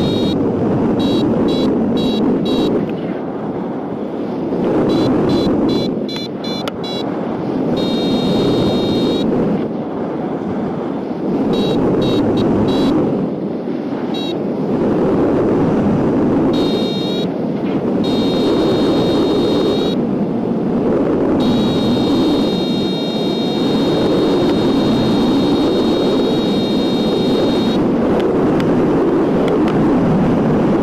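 Airflow rushing steadily over a hang glider and the microphone in flight, with an electronic flight instrument (variometer) sounding high beeps: short, evenly spaced pips in the first several seconds, then longer held tones later.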